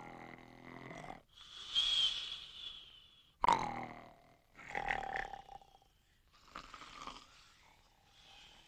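Several sleepers snoring, a cartoon sound effect. Rasping snores with a falling pitch alternate with a whistling breath out, and fainter snores overlap near the end.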